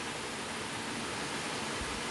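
Steady hiss of the recording's background noise, even and unchanging, with no other sound.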